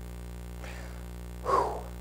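A single short laugh about one and a half seconds in, over a low steady hum.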